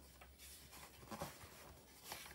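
Near silence with faint rustling of patterned paper sheets being handled, including a small brushing sound about a second in.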